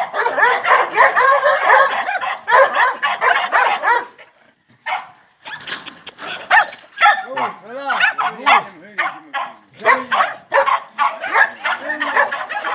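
Young white dog on a rope yelping and whining in rapid, high-pitched cries. After a short pause about four seconds in, a few sharp clicks are followed by lower-pitched yelps and whines.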